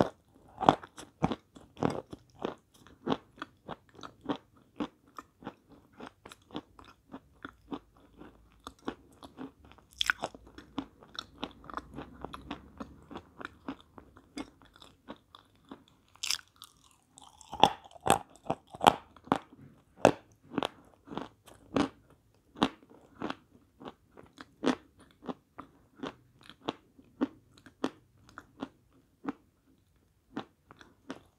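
Close-miked crunching of a lump of White Mountain (Belaya Gora) chalk being bitten and chewed, a quick run of sharp crunches a few times a second. About halfway through there is a short lull, then a fresh bite and a burst of the loudest crunches.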